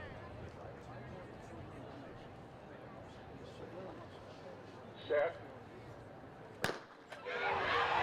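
Starting gun for a 100 m sprint fired once, a single sharp crack about two-thirds of the way through. A short shouted command, the starter's "set", comes about a second and a half before it. Crowd noise swells right after the gun as the race gets under way.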